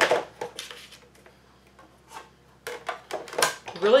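Plastic Sizzix cutting pads clacking against each other and the Big Shot's platform as a die-cutting sandwich is stacked. There are a few light clicks near the start and a louder cluster of clacks about three seconds in.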